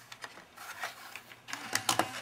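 A DVD being fed into a PowerBook G4's slot-loading SuperDrive, which draws the disc in with a few faint mechanical clicks and scrapes.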